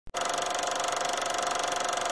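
Film projector sound effect: a fast, even mechanical clatter with a steady whine, starting suddenly just after the beginning.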